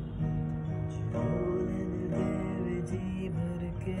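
Acoustic guitar playing a slow melody, sustained notes ringing and changing every second or so.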